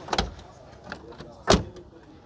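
Front door of a Peugeot Partner van being shut: two thuds just over a second apart, the second one louder.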